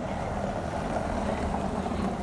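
A BMW SUV driving slowly past over cobblestones: a steady rumble of tyres and engine that is loudest about a second in.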